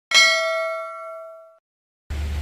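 Notification-bell 'ding' sound effect from a subscribe-button animation: one bright metallic ding struck once that rings and fades over about a second and a half.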